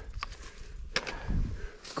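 A hiker's footsteps on a rocky trail: soft thuds and a few sharp scuffs and clicks, roughly a second apart.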